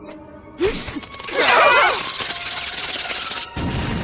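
Anime explosion sound effect: a crashing blast with a voice crying out through it, then a second rumbling blast about three and a half seconds in, over background music.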